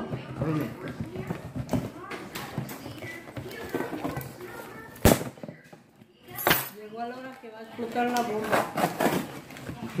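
A cardboard shipping box being opened by hand: stuffed packing paper rustles and tears, with a sharp knock about five seconds in and another a second and a half later. Voices talk throughout.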